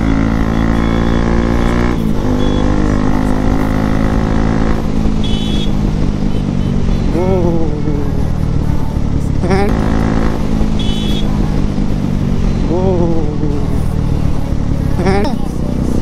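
Bajaj Pulsar NS200 single-cylinder motorcycle engine running under way, its pitch stepping down at gear changes about two and five seconds in, with wind rumble on the microphone. Voices call out in rising-and-falling shouts several times over it.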